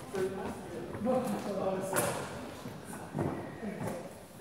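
Indistinct background voices echoing in a large sports hall, with one sharp click about halfway through.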